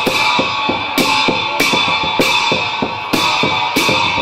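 Live Newar processional music: large brass hand cymbals clashed on a steady beat, about every 0.6 s, over fast, dense drumming.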